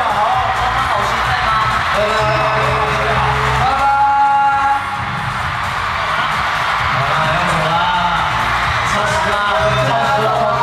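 A pop song through a hall's sound system with male voices singing, over steady bass, and an audience cheering and screaming all through.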